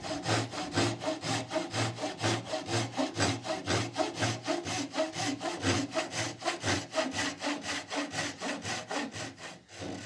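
Japanese pull saw cutting a notch in a wooden board by hand, in fast, even strokes.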